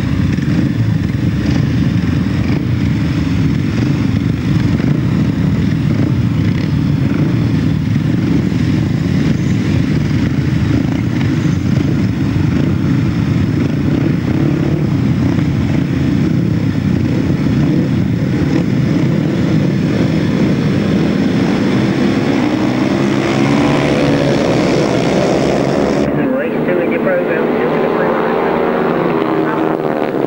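A pack of 500cc solo grasstrack motorcycles idling and revving on the start line, their single-cylinder engines running together, then accelerating hard away with rising pitch in the last few seconds.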